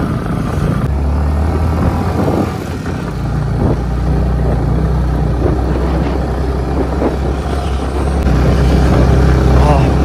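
Motorcycle engine running steadily in low gear with a deep, even hum while riding at low speed. It eases off briefly about three seconds in, then picks up again.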